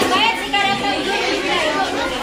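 Chatter of many voices, children and adults talking over one another at once.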